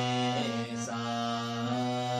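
Harmonium playing a melodic phrase, its reeds sounding a steady low note beneath changing higher notes.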